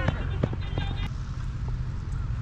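Cricket players' voices calling out across the field, over a steady low wind rumble on the helmet-mounted action camera's microphone, with a few light clicks.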